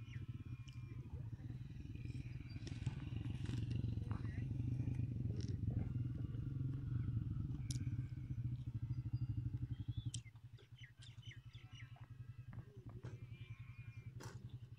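A small engine running with a steady low rapid throb, which drops to a quieter level about ten seconds in. Faint short high chirps sound over it.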